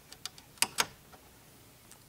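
A few light clicks and taps as a USB cable's plug is pushed into the port of a light-socket USB charger adapter screwed into a lamp. The two loudest clicks come a little after half a second in.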